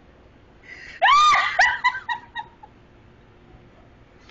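A woman's high-pitched shriek about a second in, followed by a few shorter squeals that die away within about a second and a half.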